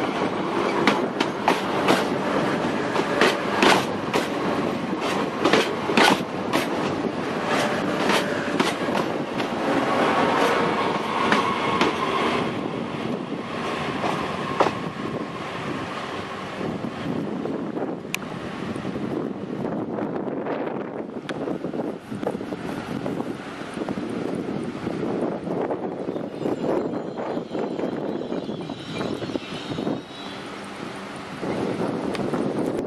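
SNCF AGC bi-mode railcar (B 81500 series) passing close by, its wheels knocking rapidly over rail joints, with a brief squeal about ten seconds in. It then runs more quietly and evenly as it moves away along the platform.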